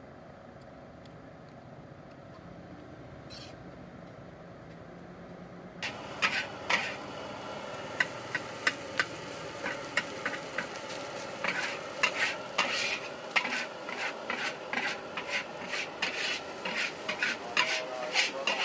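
A metal spatula scraping and clanking against a large aluminium wok as fried rice is stirred and tossed, over a steady frying sizzle. The stirring starts suddenly about six seconds in, after a stretch of faint steady background noise, and goes on as a fast run of sharp scrapes and clanks.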